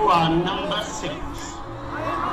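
A person's voice speaking, with music faintly beneath.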